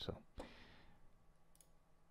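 Two faint clicks about half a second apart, followed by a soft hiss and then near silence.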